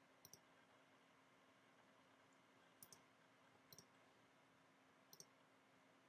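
Near silence with four faint clicks of a computer mouse button, one near the start and three in the second half.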